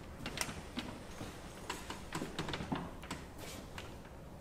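Footsteps on a stage floor, with a few dull thumps and many small irregular clicks and knocks.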